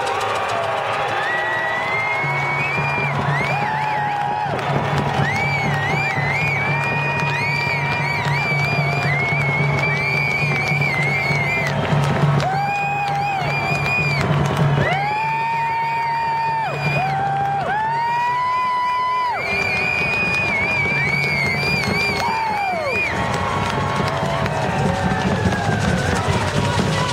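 A group giving long, high held ceremonial cries and whoops. The calls overlap and each glides up at the start and down at the end, over a low steady hum.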